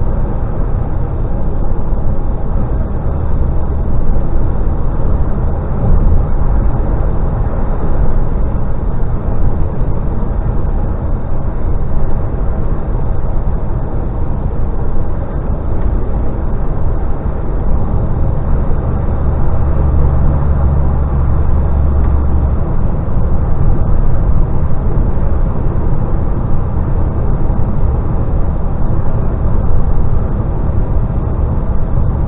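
DAF XF lorry cruising at motorway speed: a steady low engine drone mixed with tyre and road rumble. A deeper hum swells for a few seconds about two-thirds of the way through, then settles back.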